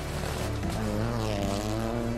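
Peugeot 208 Rally4 rally car's turbocharged three-cylinder engine running hard as the car passes, its pitch rising and then falling, mixed with background music.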